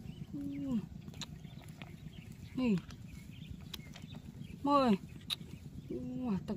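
A woman's brief vocal sounds, three short calls falling in pitch, over scattered light clicks of giant land snail shells knocking together as they are scooped up by gloved hands.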